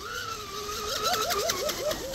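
Whine of an RC catamaran's Rocket 2948 3450kv brushless motor running at speed over the water. About a second in, the pitch starts wavering up and down about five times a second as the boat hops, which the owner puts down to the props lifting too much.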